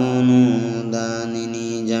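A man's voice intoning in a slow, chant-like way, holding long syllables at a nearly steady pitch.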